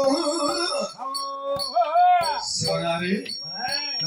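A man's voice in a Tamil villupattu (bow song) performance, drawn-out sung or chanted phrases. A held note about a second in is followed by swoops of pitch up and down.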